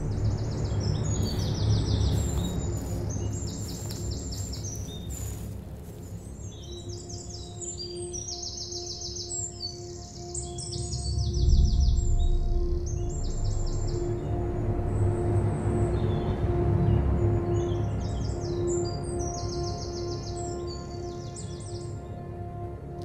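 Birds chirping in quick, repeated trills throughout, over background music: a low rumbling drone that swells about halfway through, and a steady held tone that comes in about a third of the way in.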